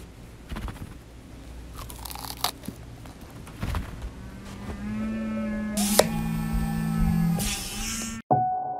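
Sound effects for a clay stop-motion animation: scattered clicks and crackles, then a held pitched sound with several overtones whose upper notes bend upward past the middle. A sharp click comes partway through it.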